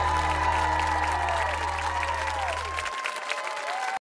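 A live band's final held chord ringing out and cutting off about three seconds in, over studio audience applause and cheering.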